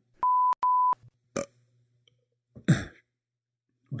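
Two short electronic beeps at one steady pitch, then about two and a half seconds in a person burps loudly into the microphone, a short wet belch described as foamy and yucky.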